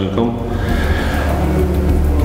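A man's voice briefly, over background music with sustained low notes.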